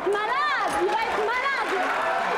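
Overlapping studio chatter with two high-pitched rising-and-falling vocal cries, one about half a second in and another about a second later.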